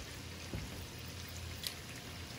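Shrimp scampi in its butter sauce simmering softly in a skillet, a quiet steady bubbling, with one light click about half a second in.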